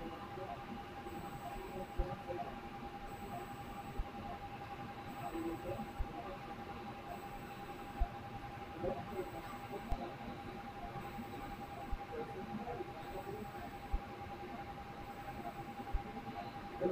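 Operating-theatre room tone: a steady high electronic tone from the equipment, with a short faint tick about every two seconds over a low background hum.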